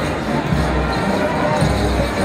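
Parade band music with a deep beat about once a second, over the voices of a street crowd.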